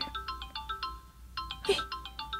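Mobile phone ringtone: a quick melody of short, bright notes that breaks off about halfway through and then starts again.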